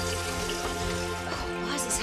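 The last held chord of a TV theme tune fading under a kitchen tap running into a kettle, an even hiss that starts at the scene change.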